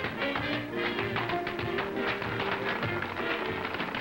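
Tap dancing: quick, dense taps of metal-tipped tap shoes on a stage floor over a small band's swing accompaniment, on an old film soundtrack with a thin, dull top end.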